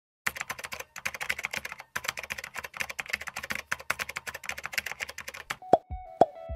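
Fast computer-keyboard typing, three quick runs with two short breaks, lasting about five seconds. Near the end it gives way to music: a loud struck note with a deep falling boom.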